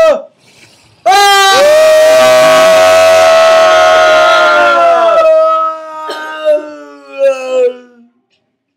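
Two teenage boys howling one long, loud note together. It starts about a second in and is held for about four seconds, then trails off in wavering tones that slide downward.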